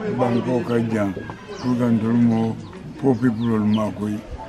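A man speaking continuously in a language other than English, with birds calling faintly in the background.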